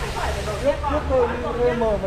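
Indistinct voices talking in the background, over a steady low rumble.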